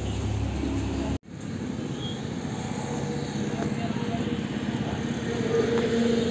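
Vehicle engine running steadily, with voices in the background; the sound drops out for an instant about a second in.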